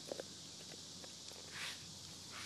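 German shepherd working a raw lamb shank with its teeth: two sharp clicks of teeth on bone just after the start, then a brief rustle about a second and a half in as it picks the shank up and moves off across the grass.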